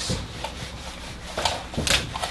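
Rubbing on a whiteboard as it is wiped and written on, a steady scratchy noise with two sharper scrapes about one and a half and two seconds in.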